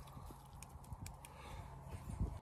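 Faint steady low hum with a few light clicks and taps.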